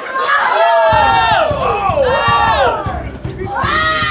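Ringside onlookers shouting and cheering at a sparring bout, with several loud drawn-out yells that overlap and fall in pitch.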